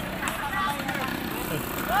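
Mostly speech: people talking at a roadside, with a voice starting up near the end, over steady outdoor road noise.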